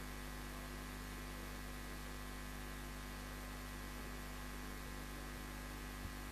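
Faint, steady electrical mains hum with a low hiss underneath.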